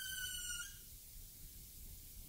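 A held electronic synth tone from an old-school techno tape, its pitch sagging slightly, ends about half a second in. After it comes only faint cassette tape hiss with a low hum: a gap between tracks.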